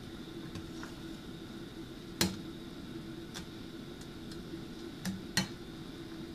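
A metal ladle clinking against a metal pot as soup is stirred: a few light clicks, the loudest about two seconds in and two close together near the end, over a steady low hum.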